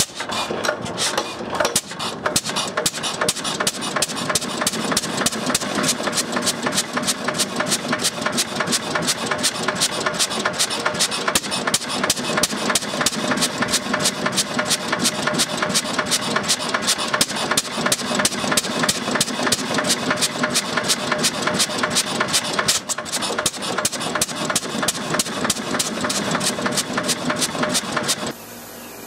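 Fairbanks-Morse Model Z 6 hp single-cylinder stationary engine, just started from cold, running steadily with a rapid, even train of sharp exhaust beats.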